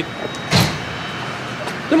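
Steady road-traffic noise, with a short rush of noise about half a second in.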